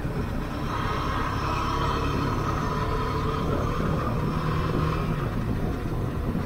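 Motorcycle riding along a highway: a steady engine and road rumble with wind on the microphone, and a faint steady whine joining in about a second in.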